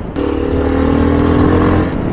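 Honda NX650 Dominator's single-cylinder four-stroke engine running at a steady pitch as the bike cruises.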